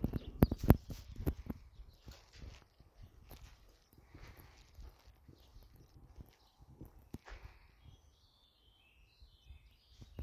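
Footsteps on a concrete floor scattered with straw, a few loud steps in the first second and a half and softer, irregular steps after; near the end a bird chirps a short run of high notes.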